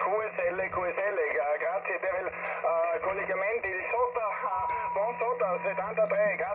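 Another amateur station's voice coming in over a portable QRP HF transceiver, thin and band-limited through the radio's small speaker, over a steady hum. A steady whistling tone sits under the voice for the last couple of seconds.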